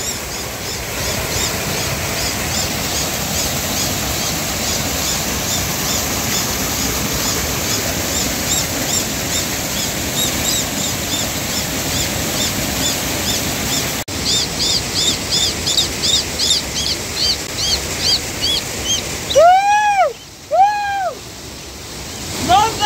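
Rushing water from a small waterfall and stream, steady throughout, with a small bird chirping repeatedly in short high peeps a few times a second. Near the end the water drops away and two louder, lower calls are heard.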